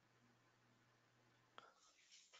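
Near silence: faint room tone over a webinar audio connection, with one tiny tick near the end.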